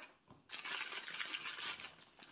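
Wrapped candies clinking and rustling as they are handled and tipped out of a bag, a busy run of small clicks and crinkles lasting about a second and a half from half a second in, after a short tap at the start.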